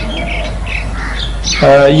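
A few short, high bird chirps over a steady low hum, in a pause in a man's speech; his voice resumes near the end.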